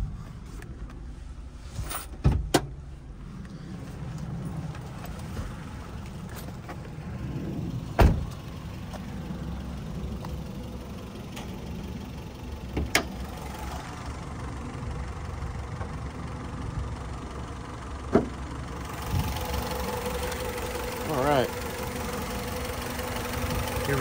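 Honda DOHC VTEC four-cylinder engine of a 1999 Accord wagon idling steadily, with several sharp knocks of the car's doors and latches, the loudest about eight seconds in. In the last few seconds the idle comes through clearer, with a steady hum.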